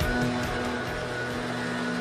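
News sports segment theme music ending: the beat stops and a final sustained chord rings on.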